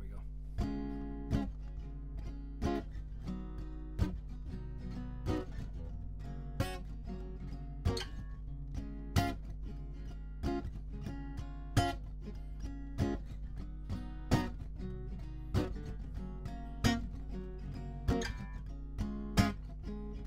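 Lowden acoustic guitar playing a bluesy instrumental intro, a steady picked-and-strummed pattern with a sharp accent about every second and a third.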